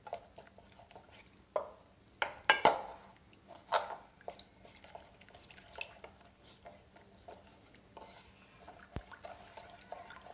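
Spoon stirring a thin cornflour batter in a bowl, with wet sloshing and light clinks throughout. A few sharper knocks come between about two and four seconds in.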